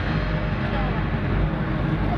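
Crowd voices over a steady low rumble from a fireworks display.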